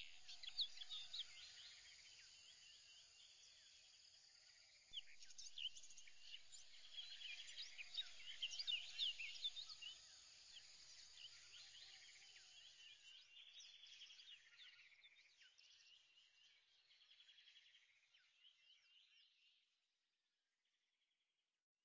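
Faint birdsong: several birds chirping and trilling, rising a little about five seconds in and then fading out toward the end.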